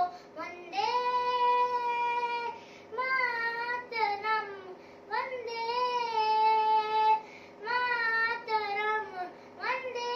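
A young girl singing solo: long held notes that slide and waver in pitch, in about five phrases separated by short breaths.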